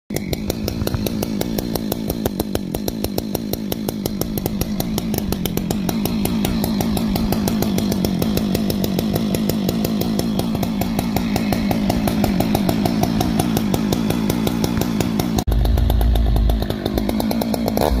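Husqvarna 575 chainsaw's two-stroke engine idling steadily through a modified, opened-up muffler, a rapid, even popping exhaust note. About three-quarters of the way through, a short deep rumble sounds over it.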